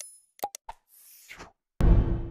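Animation sound effects from a subscribe button graphic: a couple of short plopping pops, like mouse clicks, and a soft whoosh, then near the end a loud sudden low hit that rings out briefly as a transition.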